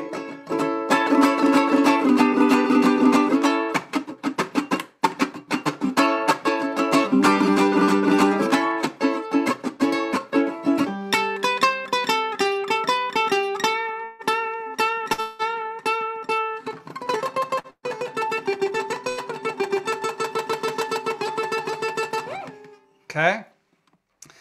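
Ukulele playing a surf-rock tune: strummed chords moving between A and G, then single-note runs up and down the neck, then fast repeated picked notes, stopping about a second and a half before the end.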